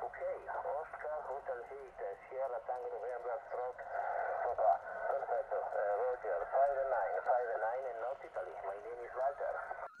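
A voice talking over HF radio, heard through the transceiver's speaker, with the thin, telephone-like sound of single-sideband voice reception.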